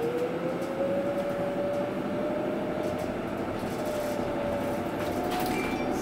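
Proterra ZX5 battery-electric bus heard from inside the cabin, its electric drive motor whining and rising in pitch as the bus speeds up, then holding nearly steady, over road rumble.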